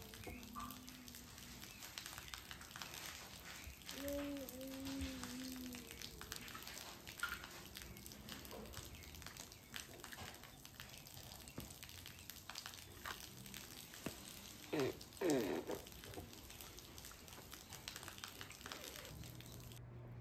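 A toddler's brief, soft vocal sounds at the start and again about four seconds in, over scattered small clicks and knocks of plastic toy blocks being handled. A louder short sound with a sliding pitch comes about fifteen seconds in.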